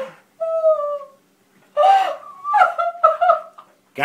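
A woman crying with emotion: a high, drawn-out wail, then several louder sobbing cries, tearful and close to laughter.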